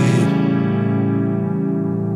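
A band's held chord on guitar and keyboard ringing out after the last sung line. It wavers slowly and fades gradually, its brightness dying away early on.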